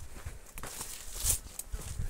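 Footsteps walking along a dirt trail through scrub, as soft irregular thuds, with a brief rustle of leafy branches brushing past about a second in.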